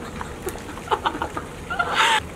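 A woman laughing in short, separate bursts.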